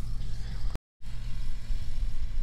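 A low, steady engine rumble, broken by a brief drop to silence just under a second in.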